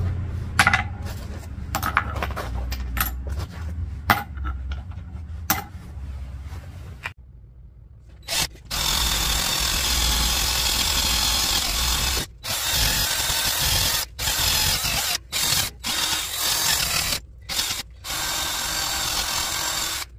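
Cordless drill spinning a wire wheel brush against a cast copper ingot clamped in a bench vise, scouring off the casting scale in several runs with short stops between them. Before it, scattered light clicks and knocks over a low hum.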